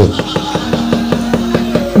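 A dalang's rapid, even knocking on the cempala, with the kepyak metal plates on the puppet chest, at about seven strikes a second. A steady held tone sounds underneath from about half a second in.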